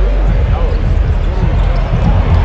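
Arena crowd noise during live basketball play: a steady hubbub of spectators with voices close by, over the thumps of the ball being dribbled on the hardwood court.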